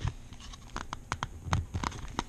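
Hard plastic clicks and taps as fingers pry at the lid of a clear plastic speed-cube display box, about half a dozen sharp separate clicks.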